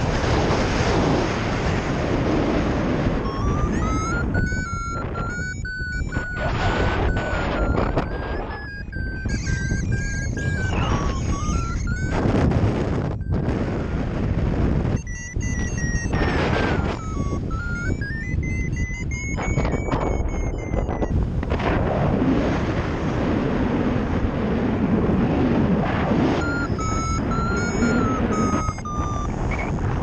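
Wind buffeting the microphone during a paragliding flight. A high, whistle-like tone slides up and down in pitch over the wind from a few seconds in until about two-thirds of the way through, and returns briefly near the end.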